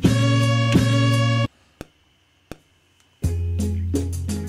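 Chopped sample of a Beninese record played from an Akai MPC One: a held chord with one hit in the middle, cut off abruptly about a second and a half in. Then a gap of near silence with two faint clicks, and the boom-bap beat with its deep bass and drums comes back in near the end.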